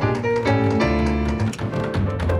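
Band music from a studio recording session: held chords over a bass line, with light percussion ticking steadily through it.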